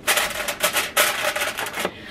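Aluminium foil crinkling and crackling under hands as a foil-covered baking dish is pressed on and lifted out of a slow cooker crock, a dense run of small crackles.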